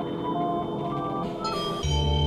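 Background music of held tones with a few stepping notes. A short higher run comes near the end, and a deep bass note enters just before it closes.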